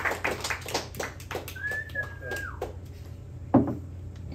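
Scattered audience claps dying away over the first second and a half, then a short high whistle lasting about a second that rises slightly, holds and drops, and a single sharp click near the end, all over a steady low hum.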